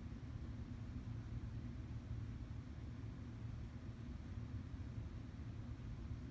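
Faint, steady low background rumble of room noise, with no distinct events.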